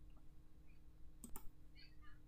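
Two quick mouse clicks a moment apart, about a second in, over a faint steady hum.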